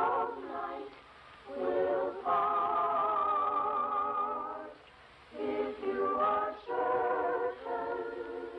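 Children's choir singing a cappella, sustained notes in phrases with short breaths between them.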